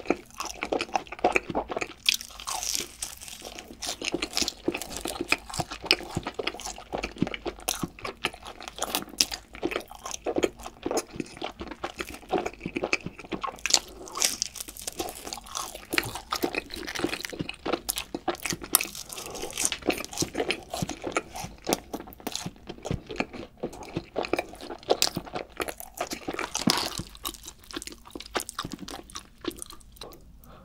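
Close-miked crunching and chewing of cheese-powder-coated fried chicken, with a dense run of crisp crackles as the crust is bitten and chewed, easing off briefly near the end.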